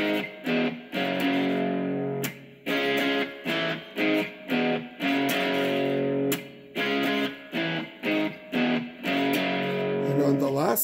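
Electric guitar playing a power-chord riff: a few short stabbed chords, then a longer held chord, the pattern repeating about every two and a half seconds.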